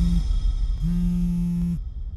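Smartphone vibrating with an incoming call: one buzz cuts off just after the start, and a second buzz of about a second follows, over low background music.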